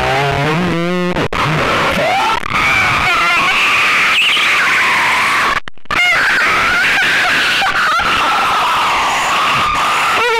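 A person's high-pitched, wavering wail or scream, distorted through GarageBand's Bullhorn voice effect. It cuts out for a moment a little past halfway, then carries on.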